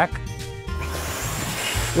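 Small shop vac switched on under a second in, its motor then running steadily with a rush of air from the hose, which is reversed to blow.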